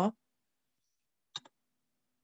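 Near silence broken a little past halfway by a short sharp click and a fainter second click just after it: a computer click advancing the presentation slide.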